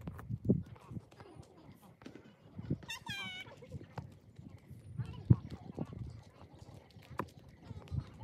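Faint voices with scattered knocks and thumps, one louder about five seconds in, and a single high, wavering call about three seconds in.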